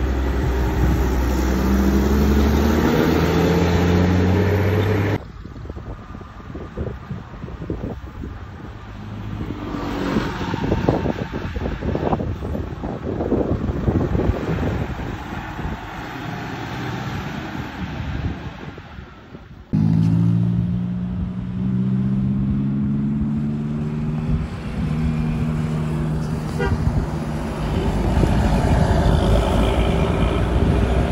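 Intercity buses passing with multi-tone 'telolet' horns: a horn plays a stepped melody for about five seconds, then the engine and road noise of a bus driving by, then another horn melody from about twenty seconds in, stepping through several notes.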